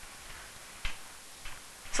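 Quiet room hiss with two faint clicks, the first a little under a second in and a weaker one about half a second later. A woman's voice begins at the very end.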